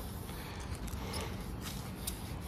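Quiet outdoor background noise, steady and low, with a few faint light clicks.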